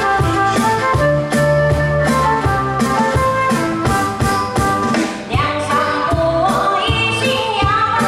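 Live band with drum kit and keyboards playing a song's instrumental introduction over a steady drum beat, with held melody notes; a female singer's voice comes in a little past halfway through.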